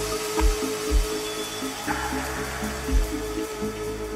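Ambient electronic music played live on hardware synthesizers and a drum machine: a held synth tone over slow bass notes, with a few irregular kick drum hits, about half a second in, near one second and just before three seconds.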